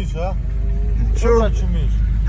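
A man's voice in short phrases over a steady low rumble from the cars alongside each other.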